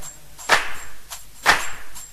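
Soundtrack percussion: two sharp, whip-like cracks about a second apart, with a fainter click between them, leading into background music.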